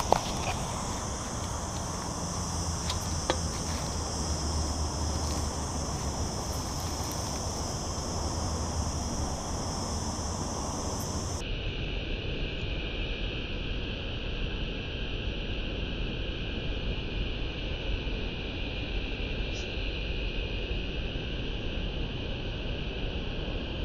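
A steady, even chorus of insects buzzing in dry summer vegetation, with a low rumble underneath at first. About eleven seconds in it changes abruptly to a lower-pitched, steady insect buzz.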